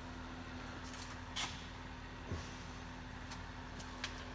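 Steady low electrical hum with a steady tone, from the powered-up CNC mill and its control cabinet, with a short click about a second and a half in and a soft knock a little later.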